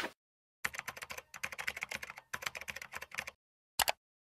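Computer keyboard typing sound effect: a rapid run of keystrokes in three quick spurts, then a single short click near the end.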